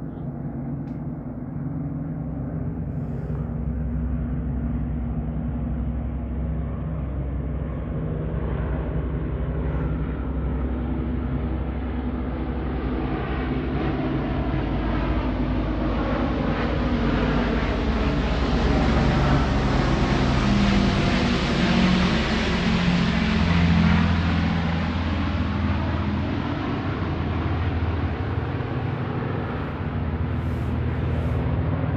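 Large suspended gong played continuously with a soft mallet, a deep sustained hum under a shimmering wash that swells steadily, brightest about two-thirds of the way through, then eases slightly.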